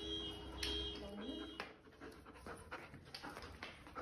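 German Shepherd panting while tugging on a braided rope toy, with a run of irregular scuffs and clicks from the struggle in the second half.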